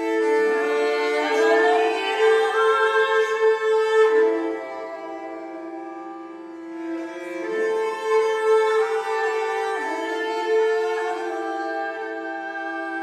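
Hardanger fiddle bowed in a slow folk tune: two low notes are held as a steady drone while a gliding, ornamented melody moves above them. It is loudest in the first few seconds, dips in the middle, then swells again.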